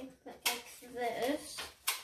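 Clear adhesive tape pulled from a roll and torn off. It comes as two short noisy sounds about a second and a half apart, with a soft voice between them.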